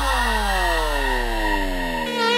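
A vinahouse remix breakdown with the drums dropped out. Several synth tones glide downward in pitch together over a held deep bass note, which fades out near the end.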